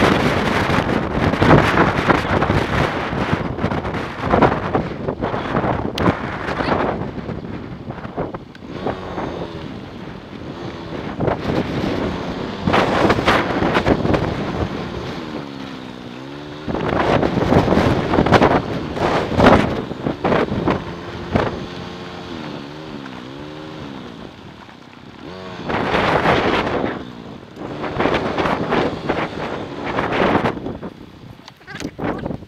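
Motorbike engine running under heavy wind buffeting on the microphone as the bike is ridden. The engine note rises and falls a few times around the middle as the rider changes speed.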